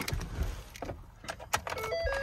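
Keys jangling and clicking as the ignition key of a Ford F-550 is put in and turned to the on position. Near the end the dash's electronic key-on chime begins with a few short tones.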